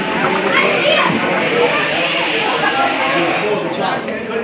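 Many voices shouting and calling over one another, spectators and young players, in an ice hockey arena.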